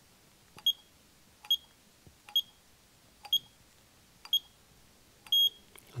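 Icare rebound tonometer taking six readings on an eye: each time the probe fires there is a faint click and a short high beep, about one a second. The sixth beep is longer and marks the end of the six-reading series.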